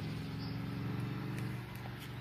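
Steady low machine hum, holding one even pitch, with a couple of faint ticks about three-quarters of the way through.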